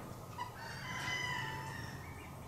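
A rooster crowing once, faint: one long call about a second and a half long, starting about half a second in.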